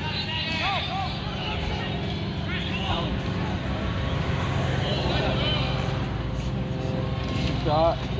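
Scattered distant shouts and calls across an open sports field, over a steady low rumble.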